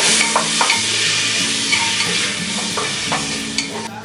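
Chopped tomatoes and onion sizzling in hot oil in a pot, stirred with a wooden spoon, with a few knocks of the spoon against the pot. The sizzling cuts off sharply just before the end.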